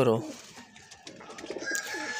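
Pigeons cooing faintly in a loft, then a distant rooster begins a long, steady, high crow about one and a half seconds in.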